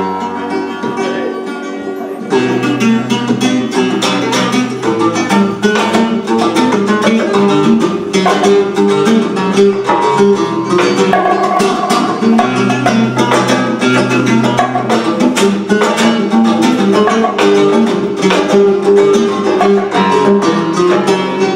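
Two acoustic flamenco guitars playing together over hand percussion on a cajón and small drum, with many sharp percussive strikes. The playing grows fuller and louder about two seconds in.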